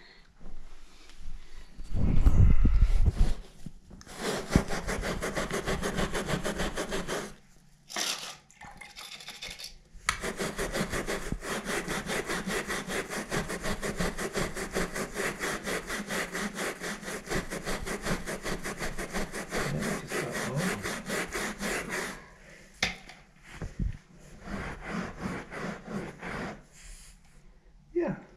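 Stiff plastic scrub brush scrubbing wet carpet pile in fast, even back-and-forth strokes, working a vinegar, salt and water solution into a rust stain. The strokes come in a short spell about four seconds in and a long steady spell from about ten seconds to about twenty-two seconds. The loudest sound is a low thud about two seconds in.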